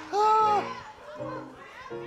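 Sustained keyboard chords held under a sermon pause, with one short, loud shout from a voice just after the start.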